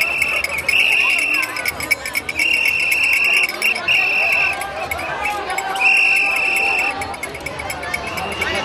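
A high whistle blown in about five long blasts, each around a second, over the chatter of a crowd.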